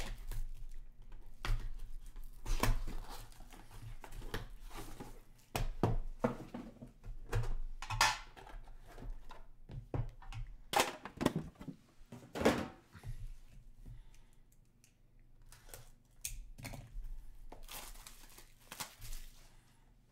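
Plastic shrink-wrap being slit and torn off a cardboard trading-card box, crinkling as it comes away, then the box opened and its hard black inner box lifted out and handled, with irregular knocks and thumps.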